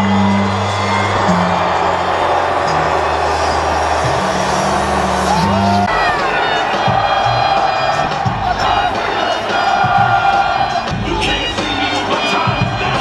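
Wrestling entrance music played loud over a stadium PA, with a large crowd cheering and whooping. The music's steady bass notes stop about halfway through and the music changes.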